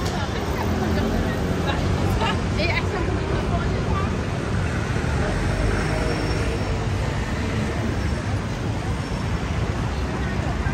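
Busy city street ambience: a steady rumble of road traffic with indistinct voices of passers-by, a few snatches of talk standing out in the first three seconds.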